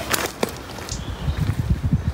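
Footsteps in flip-flops on loose gravel and rock while climbing a steep slope: a few sharp crunches at first, then a run of low, uneven thumps.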